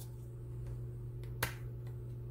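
A single sharp click from handling makeup palette packaging, about one and a half seconds in, over a steady low hum.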